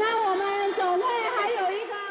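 A woman's voice speaking animatedly into a handheld microphone, fairly high in pitch.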